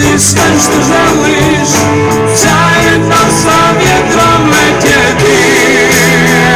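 Live rock band playing, with electric guitars, bass guitar, drums and keyboard together, loud and dense. A lead line wavers in pitch near the end.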